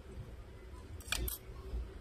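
Two short, sharp scraping clicks close together about a second in, as the bare plastic-and-metal front frame of a Samsung A20 is handled, over a low rumble of handling noise.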